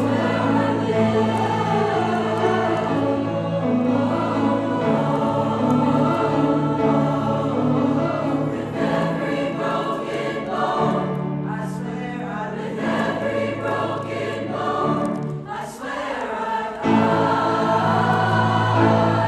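Mixed choir of sopranos, altos, tenors and basses singing a pop-song arrangement together, with sustained low bass notes under the upper parts. The sound thins briefly near the end, then swells back louder.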